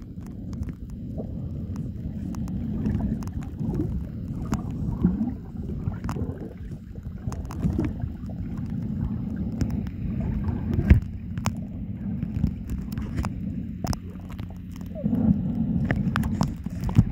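Underwater sound picked up by a submerged camera: a muffled, low rumble of moving water with scattered sharp clicks and crackles, one louder click about eleven seconds in. Near the end the low rumble swells for a few seconds.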